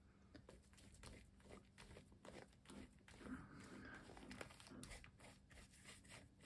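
Near silence with faint, scattered scratchy strokes of a paintbrush spreading thick white paint over a black-painted paper page.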